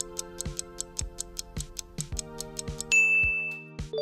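Quiz countdown timer sound effect: fast ticking, about five ticks a second, over background music, then a loud ding about three seconds in as the time runs out.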